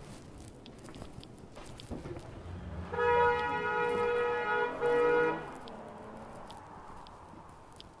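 Car horn honking: a long blast of nearly two seconds, a brief break, then a shorter blast.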